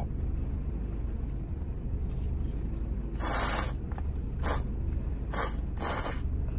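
Thick ramen noodles slurped in bursts: one long slurp about three seconds in, then three short ones, over a low steady hum.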